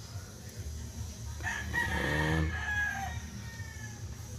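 A rooster crowing once, starting about a second and a half in and lasting about a second and a half, over a steady low rumble.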